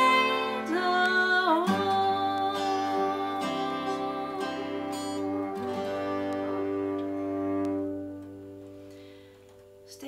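Acoustic guitar and cello playing the closing chords of a hymn, with a woman's sung final note in the first seconds. The held notes ring on and die away about eight seconds in.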